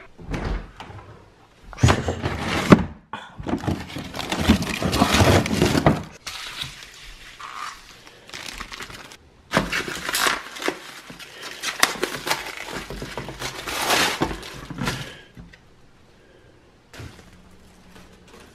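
Clear plastic film crinkling and tearing as it is pulled off a pizza, in two long crackly stretches, with two sharp knocks about two seconds in.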